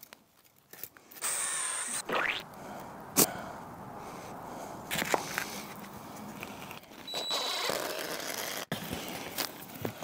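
Pine pieces being handled and fitted together on a workbench, with a sharp knock about three seconds in and a few lighter clicks later. A brief high-pitched whine comes about a second in.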